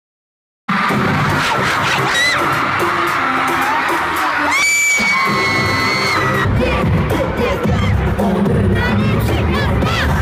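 Silence, then under a second in, loud arena concert audio cuts in: a crowd of fans screaming and cheering over amplified pop music with heavy bass, with one long held high scream in the middle.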